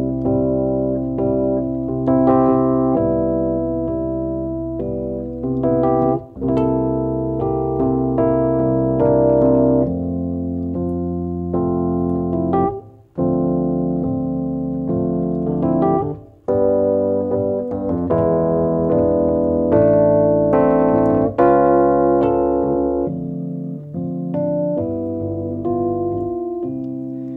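Electric piano playing a slow instrumental passage of sustained chords, each one struck and left to fade; the chords are released briefly three times between changes.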